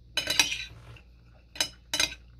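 Metal spoon clinking and scraping against a plate of noodles: a quick cluster of clinks in the first half-second, then two sharp single clinks near the end.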